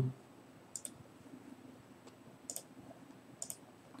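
Computer mouse clicked three times at intervals of about a second or more, each click a quick pair of light ticks (button press and release).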